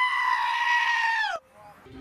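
A goat screaming: one long, loud bleat held on a steady pitch that drops and cuts off about a second and a half in.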